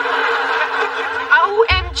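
Studio audience laughing for about a second and a half, then fading as a woman starts to speak.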